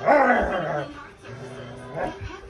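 A dog giving one loud play growl-bark, about half a second long and falling in pitch, at the start of a tug-of-war over a stuffed toy. A radio voice runs on underneath.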